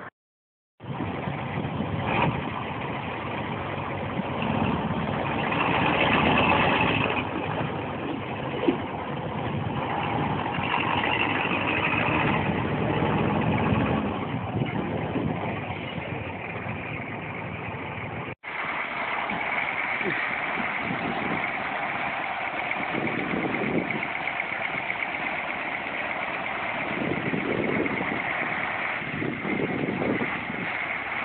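Dump truck engines running steadily, heard in two separate clips joined by a sudden cut about 18 seconds in.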